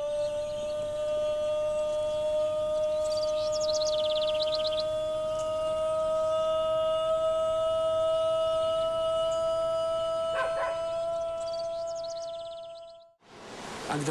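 A single note held for about thirteen seconds, rising very slightly in pitch and fading out shortly before the end. High bird chirps come in twice over it.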